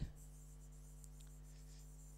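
Faint scratching and tapping of a stylus writing a word on an interactive whiteboard screen, over a steady low electrical hum.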